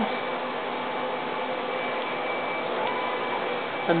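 Steady room noise, an even hiss with a faint high steady whine through it.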